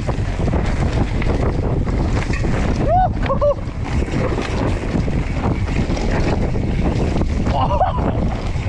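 Loud wind rush buffeting an action camera's microphone as a mountain bike descends a dirt trail at speed. Brief shouted whoops cut through it about three seconds in and again near the end.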